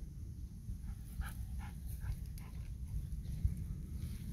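A golden retriever panting: a run of quick, short breaths starting about a second in, over a low steady rumble.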